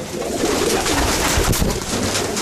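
Racing pigeons cooing in a loft, with a brief low thump about one and a half seconds in.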